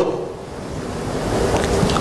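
A pause in speech, filled with steady background noise in the recording, a hiss-like rush that dips just after the start and slowly builds again.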